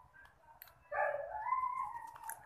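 A high-pitched, drawn-out whine of about a second, rising slightly in pitch, starting about a second in after a near-quiet stretch.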